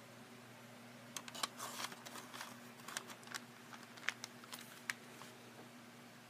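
Faint handling of a cardstock paper bag card: a scattered string of small clicks, taps and brief rustles as the card is closed up and turned over, over a low steady hum.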